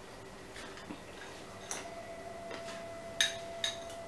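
A few light clinks of a metal spoon against a glass bowl as dry, crunchy farsan is scooped out and dropped into a ceramic bowl. A faint steady tone comes in about halfway.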